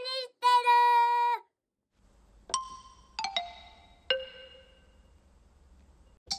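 A short, high sung jingle phrase that ends about a second and a half in. After a brief pause, a few sparse bell-like chime notes ring out one at a time and fade, over a faint low hum.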